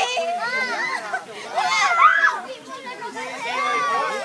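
Children's high-pitched, excited voices: squeals and chatter that come and go.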